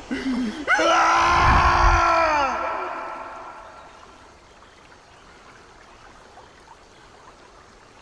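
A man screaming in anguish: a brief sob, then one long wail held for about two seconds that falls in pitch and fades out.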